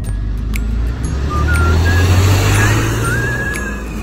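Bus cabin rumble from the engine and road, swelling louder about halfway through as the bus gets going. Background music with a high melody plays over it.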